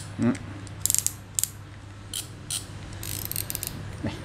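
Ratcheting clicks from a Shimano Nasci 3000 spinning reel's front drag and spool being turned by hand. There is a short run of clicks about a second in, scattered clicks after it, and a longer run of clicking near the end.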